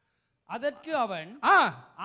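A man's voice through a handheld microphone, starting after a brief dead silence, with one loud drawn-out word about one and a half seconds in whose pitch rises and falls.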